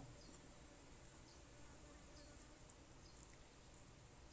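Near silence: faint background hiss with a thin steady high tone and a few faint high chirps.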